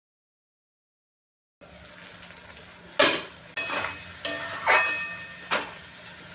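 Onion-tomato masala sizzling in an aluminium kadhai, with a wooden spatula stirring and scraping against the pan in several sharp strokes. The sizzle starts suddenly about a second and a half in, after silence.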